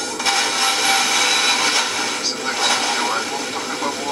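Unitra ZRK AT9115 receiver playing a distant broadcast station through its speaker: a faint voice under heavy, steady hiss and static. This is reception of a weak far-off (Russian) station, which shows the freshly realigned tuner pulling in distant signals.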